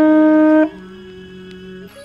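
A conch shell trumpet blown in one loud, steady note that cuts off about half a second in.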